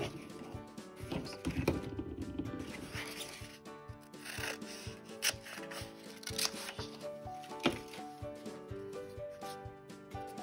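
Scissors cutting through construction paper, several snips in the first few seconds and again around the middle, over background music.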